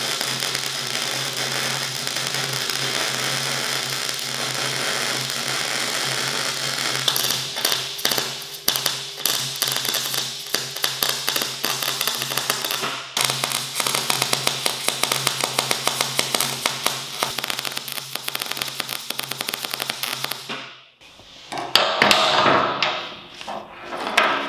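MIG welder arc running a long bead on steel, a steady hiss that turns into dense, fast crackling and sizzling, with a low hum underneath. The arc stops a few seconds before the end, and a brief clatter of handling follows.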